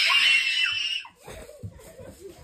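A child's high-pitched scream, lasting about a second and then cutting off.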